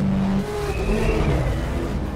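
Car engine running hard in a film car-chase soundtrack, its pitch stepping up and down, with a faint high squeal rising and falling in the middle.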